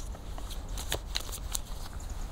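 A deck of tarot cards being shuffled by hand close to the microphone: a scatter of light, irregular card clicks.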